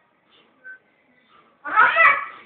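A young boy's high-pitched voice: a loud, drawn-out vocal sound that starts late, after a stretch of faint quiet sounds.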